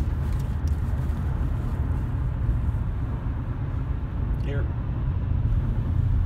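Steady low rumble of a car's interior, running evenly throughout, with a single spoken word near the end.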